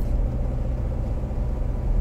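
Steady low rumble of a car's engine and road noise, heard from inside the moving car.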